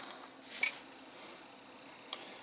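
A small, sharp click about half a second in, from handling the LED clock kit's circuit board and its backup battery holder.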